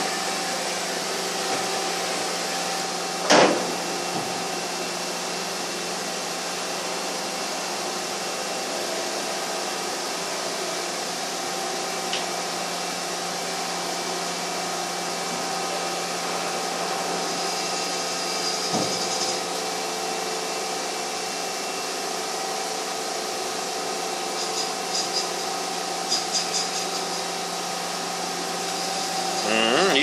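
Steady hum of a running vertical machining center, with several constant whining tones. There is one sharp click about three seconds in and a few faint ticks near the end.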